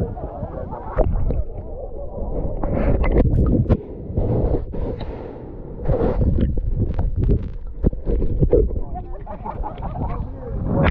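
Lake water sloshing and splashing against a camera held at the water surface, muffled and uneven, with frequent sharp splashes and knocks.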